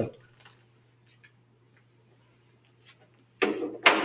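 Near silence with a faint steady low hum from the recording setup. Close to the end comes a short, loud rustle of noise lasting about half a second.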